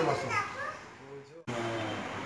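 A toddler's short high-pitched babbling calls as a man's talk trails off. About two-thirds of the way in the sound cuts off abruptly and gives way to a steady low hum.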